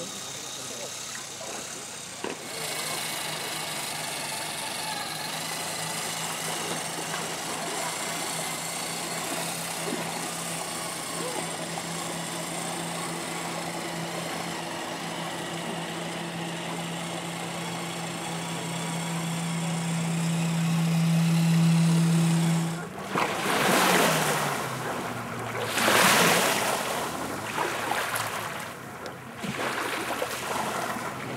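Motor and gears of a 1:14 scale radio-controlled Tatra 130 model truck whining at one steady pitch, growing louder as the truck comes closer, then winding down and stopping about three quarters of the way in. Rushes of wind on the microphone follow, over lapping water.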